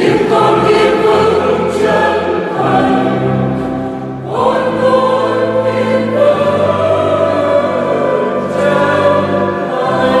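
Mixed choir of men and women singing a Vietnamese hymn in parts, holding long notes, with a short dip between phrases about four seconds in before the next phrase begins.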